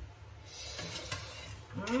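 A woman's drawn-out "mmm" of relish starts near the end, rising and then held on one pitch; before it, only low background noise with a few faint clicks.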